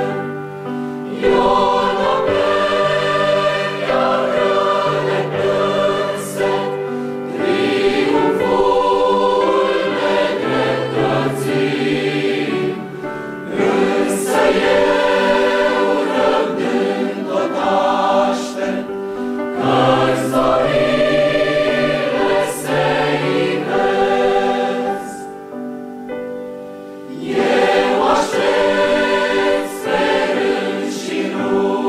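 Mixed choir of women's and men's voices singing a hymn in parts, in long sustained phrases with brief breaths between them.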